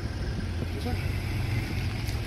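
Pickup truck engine idling: a steady low hum. There is a brief spoken "huh?" about a second in.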